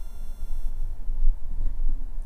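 Low, irregular rumbling crackle and handling noise on a podcast microphone, from a bad contact in its cable as the cable and mic arm are handled.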